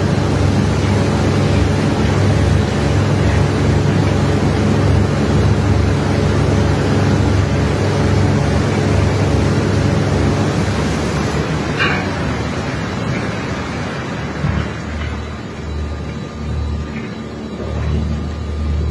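Loud, steady running of heavy machinery on the ore-unloading barge: a low engine-like hum under a broad hiss, the hiss easing off about two-thirds of the way in. A brief scrape or clank sounds about twelve seconds in.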